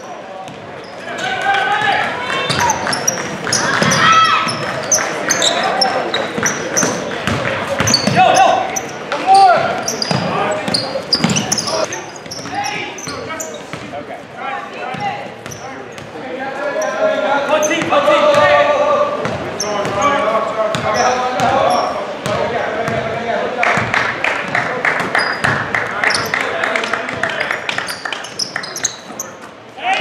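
A basketball bouncing over and over on a hardwood gym floor, with the voices of players and spectators echoing in the large gym.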